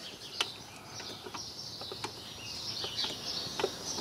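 Birds chirping in the background, with a few light clicks of something being handled.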